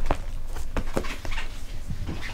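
Sheet of paper being handled, with a quick string of short clicks and taps and a few brief squeaks.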